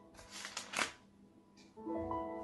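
Book pages being turned: a few short papery swishes in the first second, the last one the loudest, over faint background music whose sustained notes come back louder near the end.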